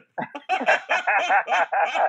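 A man laughing heartily: a quick run of short 'ha' pulses, about five a second.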